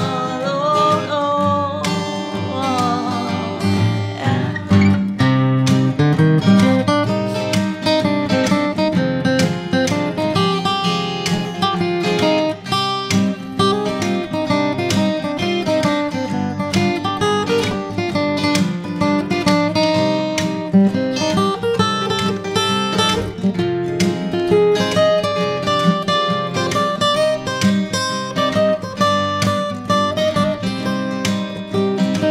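Instrumental break of a gypsy-swing song on acoustic guitars: a picked lead melody over strummed rhythm chords.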